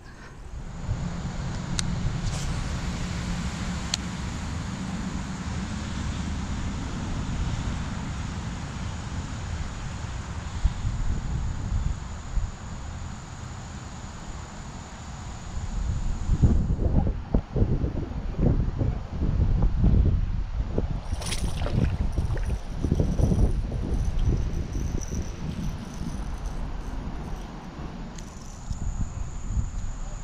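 Wind buffeting the microphone, a steady low rumble at first, then irregular gusty buffets through the second half, with a few sharp clicks.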